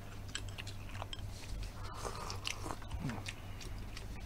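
People eating close to the microphones, chewing with small scattered clicks of chopsticks against bowls.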